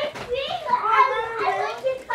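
Children's voices, high-pitched and talking over one another, with the words unclear.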